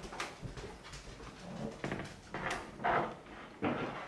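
A pet dog making a few short whimpering sounds, starting about a second and a half in and again near the end.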